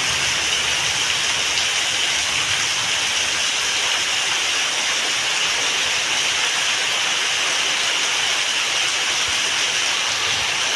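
Heavy rain falling steadily, with a stream of runoff pouring off a roof edge and splashing onto a wet concrete yard. The sound is an even, unbroken hiss.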